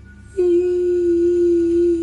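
A woman humming one long, steady note, starting about half a second in, imitating an eerie sound she heard.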